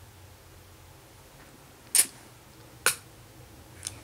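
Two sharp clicks a little under a second apart, then a fainter one near the end, as makeup items are handled and set down while the eyeshadow brush is swapped for a mascara tube; low room tone otherwise.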